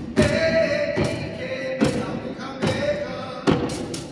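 Hawaiian hula chant (mele): a chanting voice holds a long note over evenly spaced percussion strokes, a little under one a second.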